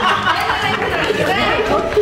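Several people talking at once: overlapping, lively group chatter.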